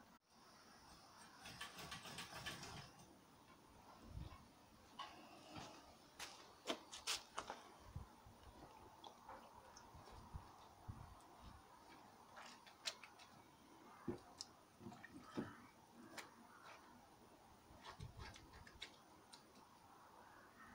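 Faint scattered clicks and knocks of hands handling a steel briquette press and filling its mould box.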